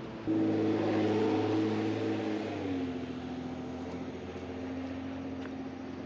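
A motor vehicle passing on the road alongside: a loud engine hum that comes in suddenly and drops in pitch about two and a half seconds in as it goes by, then carries on as a steadier, quieter hum.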